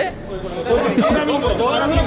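Speech: a man talking, with other voices chattering around him.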